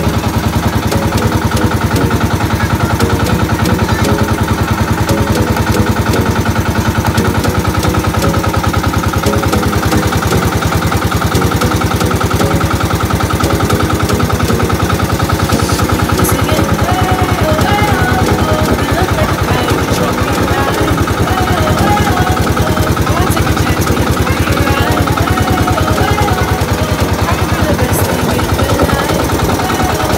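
Engine of a motorized outrigger boat (bangka) running steadily under way, a loud, even, fast-pulsing drone.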